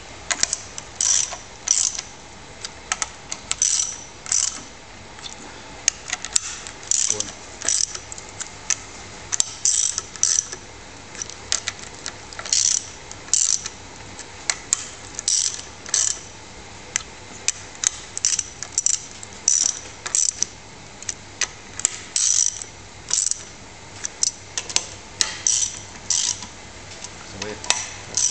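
Half-inch drive socket ratchet clicking in short repeated strokes, a burst every second or so with brief pauses, as it winds the puller's studs down onto the head bolts to jack a Jaguar V12 cylinder head off its block.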